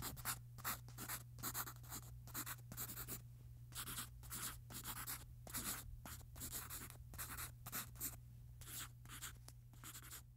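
Faint, repeated scratching strokes of an artist's drawing tool across a surface, about two or three a second in an uneven rhythm, over a steady low hum.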